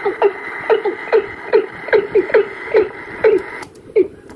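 Recorded bird calls played back from a cassette deck: a short call with falling pitch, repeated about three times a second, over steady tape hiss that cuts off suddenly near the end.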